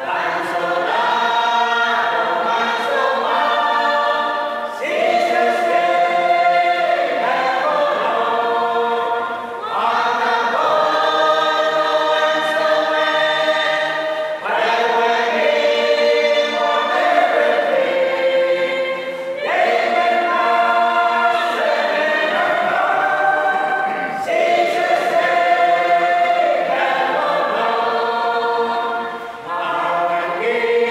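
A small mixed group of men and women singing a hymn together, unaccompanied. The singing comes in phrases of about five seconds, with a brief dip between each.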